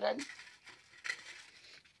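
The end of a spoken word, then faint rustling with a few light knocks: an object being handled and picked up.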